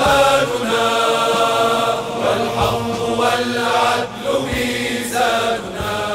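Outro music: a vocal chant sung in long held notes that move to a new pitch every second or so.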